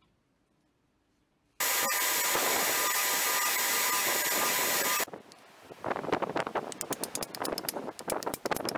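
After a second and a half of near silence, a belt grinder runs with a steady hiss and hum as the end of the wooden ash hammer handle is sanded on it; the sound starts and stops abruptly. Then come irregular knocks and handling clicks, with wind on the microphone.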